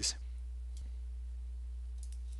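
A single faint computer-mouse click about a second in, over a steady low electrical hum.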